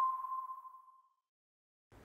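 A single electronic ping, a steady pure tone of a title-card transition sound effect, ringing on and fading away within about the first second.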